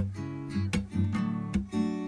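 Acoustic guitar strumming chords in a steady rhythm.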